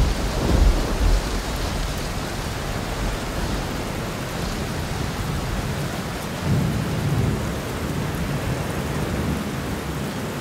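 Steady rain with low rolling thunder: a rumble swells just after the start and another about six and a half seconds in.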